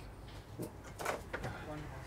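A few faint clicks and knocks of a glass office door being opened as someone steps out, over a low background hum.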